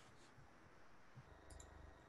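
Near silence with faint room tone and a few soft clicks: one near the start and a quick pair about one and a half seconds in.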